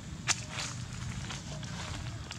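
Dry leaves and twigs crackling: one sharp snap about a third of a second in, then a few lighter crackles, over a steady low rumble.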